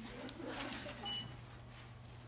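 A single short, high electronic beep about a second in, over quiet murmuring voices and a steady low hum.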